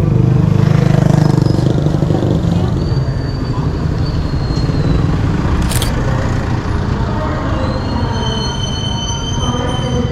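Street traffic, with a motorcycle engine running close by that is loudest in the first two seconds and then eases off. Thin high tones come and go, and there is one sharp click a little past halfway.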